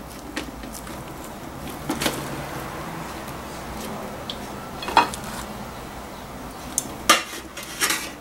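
Metal tongs clinking against an aluminium steamer pot as steamed rolls are lifted out: a few sharp clanks, the loudest about halfway through, over a steady low hiss.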